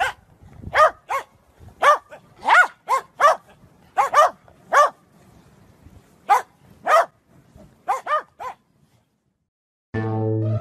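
Corgi barking over and over: about fourteen short, high barks, often in quick pairs, each rising and falling in pitch. The barking stops about a second and a half before the end.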